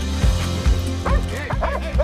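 Trailer music with a steady low beat; about a second in, a dog barks several times in quick succession over it.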